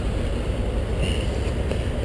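Steady low rumble of semi trucks idling in the lot.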